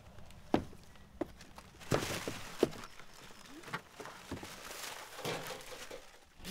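Mangoes being packed by hand into cardboard boxes: a string of separate knocks and thunks, about seven in all, with handling noise between them.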